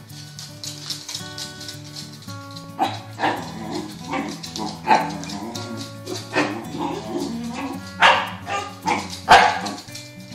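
A corgi barking about six times from roughly three seconds in, the loudest near the end, over background music with plucked notes.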